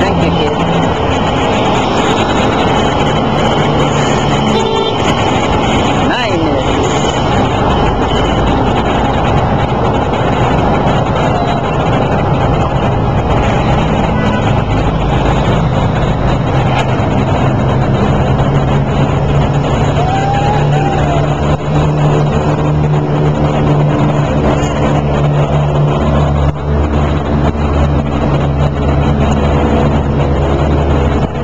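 Loud, steady road traffic noise, with a low engine hum from a motor vehicle that grows stronger about halfway through.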